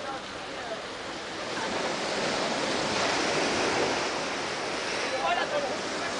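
Sea waves breaking and washing on the shore below. The rush swells about a second and a half in and eases off toward the end.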